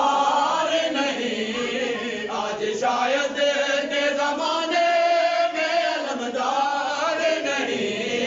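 Male voices chanting a noha, a Shia mourning lament, in a melodic line whose pitch rises and falls without a break.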